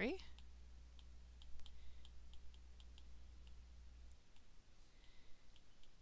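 A stylus tapping and clicking against a tablet's glass screen during handwriting: a string of light, irregular clicks. A low steady hum stops about four seconds in.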